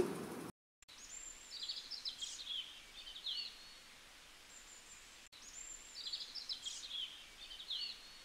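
Faint birdsong: high chirps and short trills, the same few-second recording heard twice in a row.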